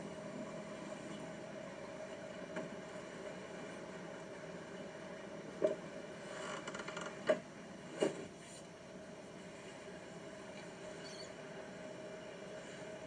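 Several sharp knocks in the second half as the net hauler's stand pole is set into its deck mounting. They sound over a steady hum.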